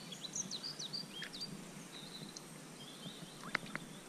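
Small songbirds chirping, short high whistled notes through the first two seconds and again about three seconds in, over a faint steady outdoor hiss. A single sharp click sounds about three and a half seconds in.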